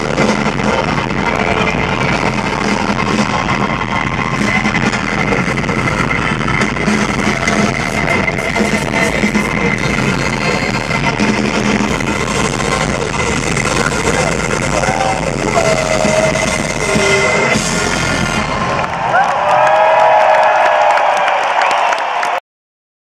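Live funk-pop band music over a stadium PA, heard from within the crowd: drums, bass, guitar, keyboards and vocals. About nineteen seconds in, the bass and drums drop out and the crowd's cheering and shouting come up louder as the song ends.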